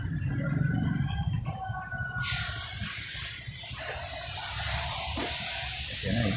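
Steady low rumble with faint music; about two seconds in, a steady high hiss sets in.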